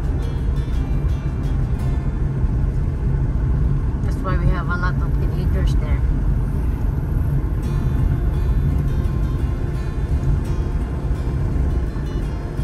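Steady low road and engine rumble heard from inside a moving car's cabin, with a short wavering voice about four seconds in.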